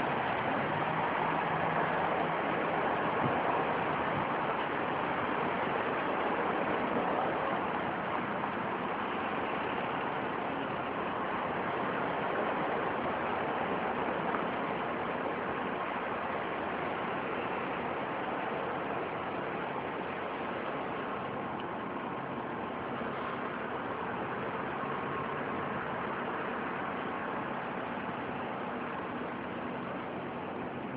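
A steady low mechanical rumble with a hiss over it, like an engine running, easing off slightly in the second half.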